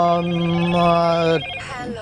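A man's voice holding one long, level-pitched hesitation sound, an 'aah', for about a second and a half, then breaking off briefly before speech resumes.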